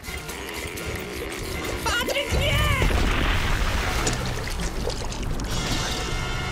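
Cartoon sound effects of a giant paint bubble bursting: about two seconds in comes a heavy boom, followed by a long wet splash of paint spraying out, over background music.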